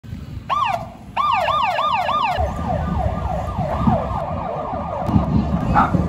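Police motorcycle siren yelping: a short burst, then rapid rising-and-falling wails about three a second, growing fainter after a couple of seconds, over low street noise.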